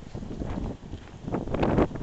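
Wind buffeting the microphone, an uneven low rumble that swells into a louder gust late on.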